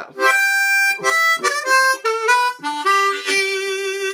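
Ten-hole diatonic blues harmonica, played tongue-blocked with tongue-slapped notes: a major pentatonic lick starting on blow six, a run of short notes, then one lower note held for about the last second.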